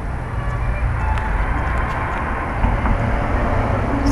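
Street traffic: a car driving past on the road, a steady rushing noise with low rumble that grows a little toward the end.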